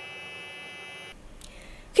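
A steady high electronic buzz, several thin tones held together, that cuts off abruptly about a second in, leaving only a faint low hum.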